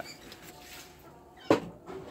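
A single sharp splash of water in a small shallow concrete tank about one and a half seconds in, over faint background noise.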